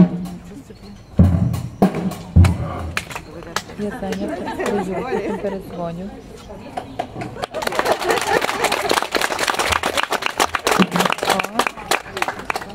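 Maxtone acoustic drum kit being played: a few heavy kick and drum hits in the first couple of seconds, then a busy run of drum strokes with cymbals through the second half. Voices talk in between.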